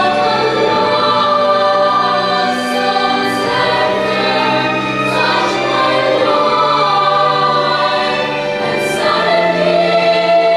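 Children's choir singing a slow song in harmony, holding long notes, with a few crisp 's' sounds at the ends of words.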